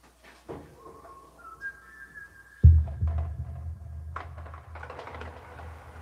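A few short high notes stepping upward in pitch. About two and a half seconds in comes a loud thump, followed by a low rumble and rustling handling noise.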